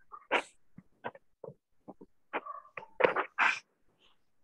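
A dog barking in a quick, irregular string of short barks, loudest in the second half.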